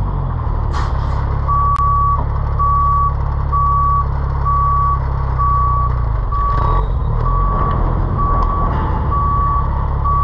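Reverse alarm on a WhiteGMC WG roll-off truck: a steady single-pitch beep repeating about every 0.7 seconds, starting a second and a half in. It sounds over the truck's diesel engine running at low revs while the truck is in reverse.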